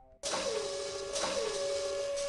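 Sci-fi robotic whirring sound effect, like servo motors: it starts suddenly a moment in as a steady hum with a hiss over it, and its tone dips down in pitch three times.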